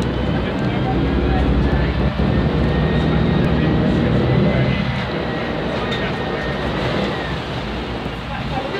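Volvo B10M bus's underfloor six-cylinder diesel engine running loudly while under way, with a thin high whine that climbs slightly and then falls away near the end.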